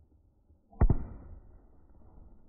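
Consumer artillery shell firework going off overhead: a sharp bang with a quick second crack right after it, about a second in, followed by a rumbling echo that fades away.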